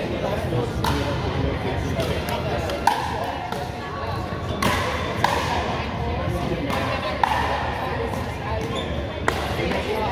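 Pickleball rally: paddles striking a hollow plastic pickleball, about seven sharp pops at uneven intervals, each with a brief ringing after it, echoing in a large gym.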